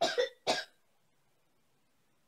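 A woman coughing twice in quick succession, two short sharp coughs right at the start.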